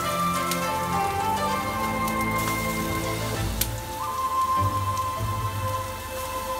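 Chopped garlic and onion sizzling in oil in a wok, with background music playing over it; a single sharp tap a little past halfway.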